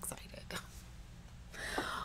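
A woman's voice in a breathy whisper: a hushed spoken word at the start, a short quiet pause, then a breathy hiss building near the end.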